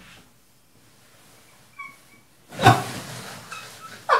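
A man's stifled laughter: a faint high squeak about two seconds in, then a sudden loud, breathy burst of laughter that trails off.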